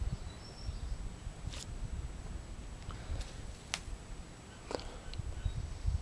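Outdoor ambience: a low, uneven rumble of wind on the microphone, with three sharp clicks spread through the middle and a few faint, brief bird chirps.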